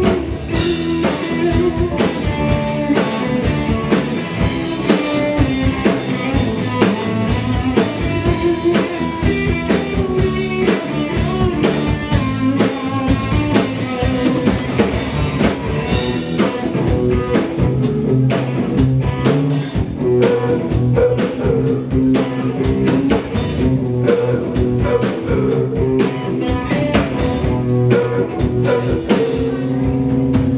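Live blues-rock band playing an instrumental stretch: electric guitars over a drum kit with a steady beat, and the singer comes back in with a word near the end.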